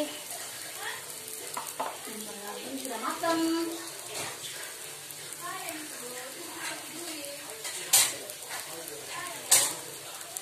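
Wingko babat cakes sizzling steadily in an oiled non-stick frying pan over medium heat, a wooden spatula scraping as a cake is turned at the start. Two sharp clicks sound near the end.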